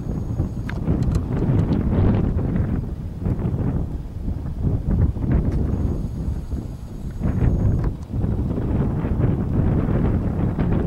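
Gusty wind blowing across the microphone: a low rushing noise that keeps swelling and easing.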